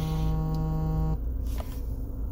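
A man's drawn-out hesitation sound, a level-pitched "ummm", held for about a second and then breaking off. A steady low electrical hum from the recording runs underneath.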